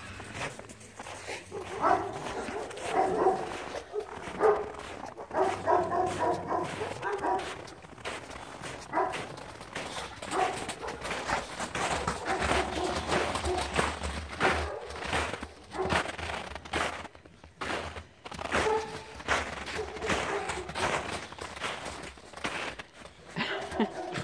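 Two dogs playing rough together, with scuffling paws in shallow snow and scattered short dog vocalizations coming and going.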